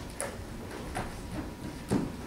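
A few soft knocks and a louder low thump just before the end, as a person gets down onto a wooden stage floor on hands and knees.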